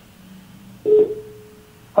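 Telephone ringback tone: one steady beep, under a second long, starting with a sharp onset about a second in, as the call rings through on the other end and has not yet been answered.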